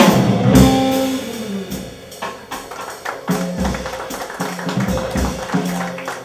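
Live jazz combo: a loud ensemble hit with a cymbal crash right at the start, then the horns drop out and the upright bass and drum kit carry on, the bass plucking low notes under steady cymbal strokes.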